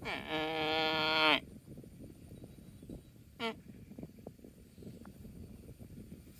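Water buffalo giving one steady, pitched call lasting about a second and a half, followed by the soft crunching and tearing of it grazing on dry grass.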